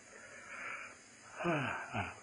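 An elderly monk's audible in-breath, then his voice comes back in with a drawn-out syllable falling in pitch, over the steady hiss of an old sermon recording.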